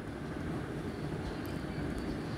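Steady background noise: an even low rumble with faint hiss, and no distinct events.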